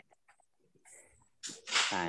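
A pause with almost nothing in it, then about one and a half seconds in a short, loud, breathy burst of air from a person close to a computer microphone, just before speech resumes.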